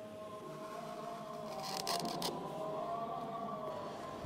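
Soft background music of steady held tones, with a few faint scratches of a reed pen on paper about halfway through.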